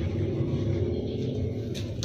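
Low, steady background rumble with one faint click near the end.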